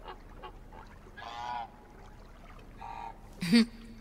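A woman's brief laugh near the end, after two short pitched sounds about a second and a half apart over faint room tone.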